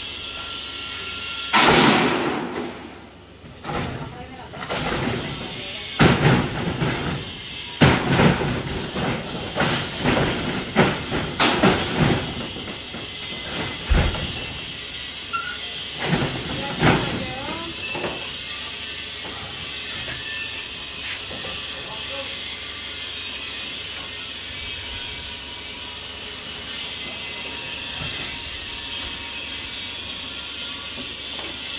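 Corrugated metal roofing sheets being taken down from an old roof frame, rattling and scraping. A loud crash comes about two seconds in, then a run of sharp bangs and knocks in the middle.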